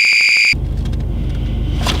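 A child's high-pitched shriek, held on one pitch and cut off abruptly about half a second in, followed by a low steady rumble.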